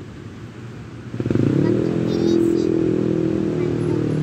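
A motor vehicle engine comes in about a second in, rising in pitch as it speeds up and then running steadily close by.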